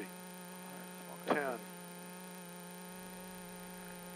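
Steady electrical hum with a faint high whine inside a rally car waiting at the stage start, unchanging throughout.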